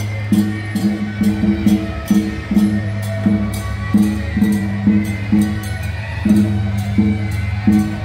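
Temple-procession percussion music: drums with cymbal strikes beating a steady rhythm, about two to three strikes a second, over a low steady hum.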